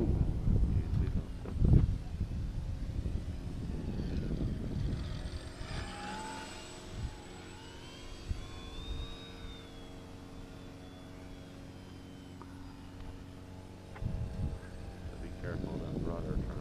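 Electric motor and propeller of a radio-control biplane whining in flight, the pitch rising and falling as the plane passes. Its battery is running low. Wind noise on the microphone in the first few seconds.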